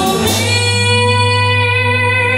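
Live band of electric guitar, steel guitar, keyboard and acoustic guitar: the beat drops out about a third of a second in and the band holds one long sustained chord over a steady bass note.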